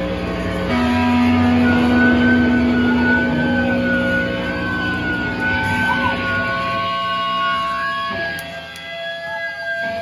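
Electric guitar amplifiers feeding back at a loud punk show: a long, held low note and a high, slightly wavering whine that sustains over it, with no drum beat. The sound thins out briefly near the end.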